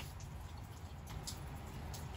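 Faint mouth sounds of a person chewing Turkish delight: a few soft clicks and smacks over a low steady hum.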